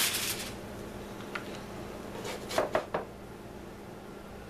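Aluminium foil crinkling as it is set aside, fading out within the first half second, then a few short scrapes and taps of a spatula on an electric griddle's nonstick plate about two to three seconds in, under a faint steady hum.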